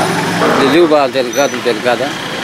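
A man talking close to the microphone, in Tetum.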